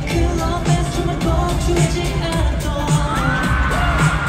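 Live K-pop concert music with a steady beat and singing, played loud over an arena sound system and recorded by a phone in the audience.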